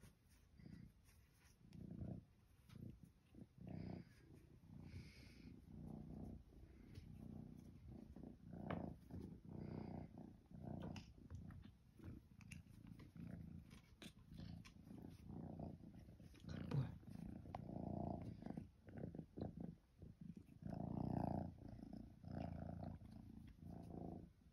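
A tabby kitten purring while it is petted, a low rumble that swells and fades with each breath.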